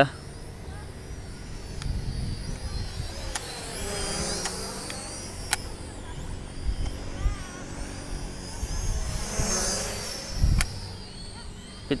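Visuo Zen Mini camera drone's propellers whining high and faint as it flies at top speed, the whine wavering and swelling twice as it passes, over a gusty rumble of wind on the microphone.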